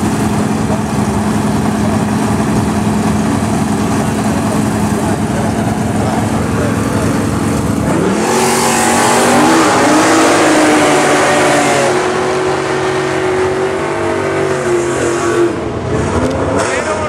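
Two drag-racing muscle car engines held at a steady rpm on the starting line. About halfway through they launch together, revving up and shifting through the gears with rising and stepping pitch, then fade as the cars run away down the strip.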